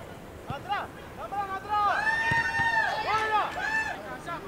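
Players shouting on a football pitch: a short high yell, then from about two seconds in a long, loud, high-pitched yell with other voices overlapping. A couple of dull thuds sound under the voices.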